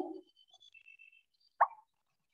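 A single short pop about one and a half seconds in: the quiz app's sound effect as a new player joins the lobby.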